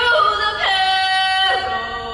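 A voice singing long held notes, sliding down into a new note about two-thirds of a second in and again at a second and a half.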